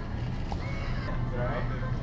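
Metal shopping cart rolling over a store floor, its wheels giving a steady low rumble, with faint voices in the background.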